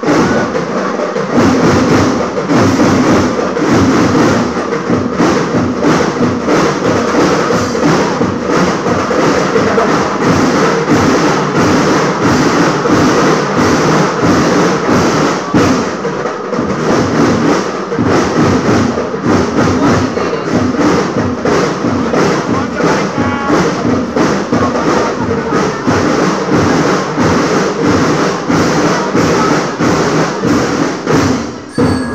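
School marching band playing loudly, drums keeping a steady beat under the melody.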